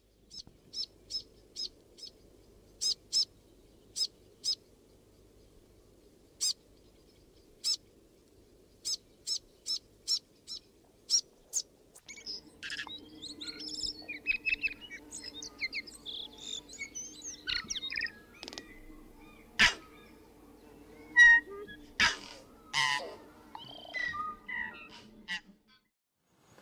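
Forest birds calling: a run of short, sharp high chips, irregularly spaced, then from about halfway a busier mix of varied whistles and calls, with a few louder calls near the end.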